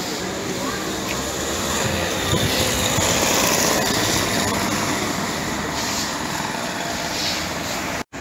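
A moped's small engine passing along the street, growing louder to a peak around three to four seconds in and then fading, over steady street background noise.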